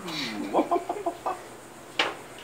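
A person laughing: a quick run of short cackling bursts between about half a second and just over a second in.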